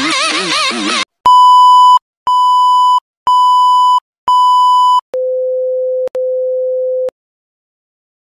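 A warbling, wavering electronic sound cuts off about a second in. Then comes a test-card tone sequence: four beeps at one high pitch, about one a second, followed by a lower steady tone held for about two seconds with a brief break in it.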